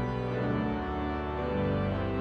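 Organ playing a hymn in sustained chords, the harmony changing about a second in and again near the end.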